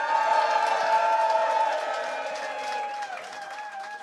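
A small group of people cheering, with several voices holding long whoops together over light clapping. The cheer is loudest in the first couple of seconds and dies away after about three.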